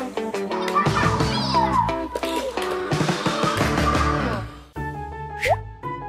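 Upbeat background music of plucked, strummed notes. It breaks off near the end and gives way to a quieter passage with a single quick rising sound effect, like a cartoon boing.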